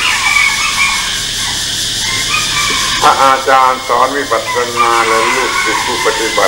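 A man's voice giving a Thai-language Buddhist talk. He pauses for about three seconds, leaving only a steady hiss from the old recording, then speaks again.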